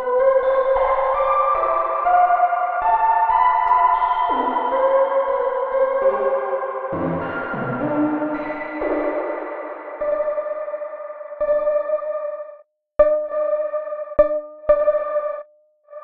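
Nebula Clouds Synthesizer, a Reaktor software synth, playing layered, reverberant tones that step up and down in pitch and overlap. In the last few seconds a single held tone sounds, broken by sharp clicks and brief drop-outs three times, and it cuts off just before the end.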